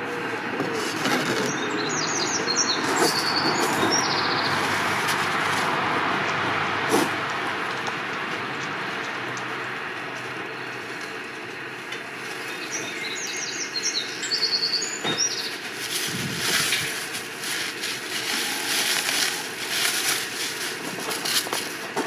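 Rummaging inside a steel oil-drum pitfire kiln: rustling, scraping and light clicks as fired pots are dug out of the ash, busiest near the end. A small bird chirps in two short bursts, over a steady rushing background.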